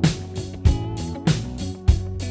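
Drum kit with 16-inch hi-hats playing a steady funk-rock groove along to a recorded song with electric guitar and bass. Hi-hat keeps time while snare and kick hits land a little under twice a second.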